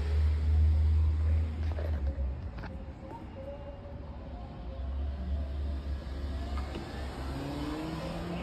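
Outdoor rumble of a car on a nearby street, with its engine note rising near the end as it accelerates.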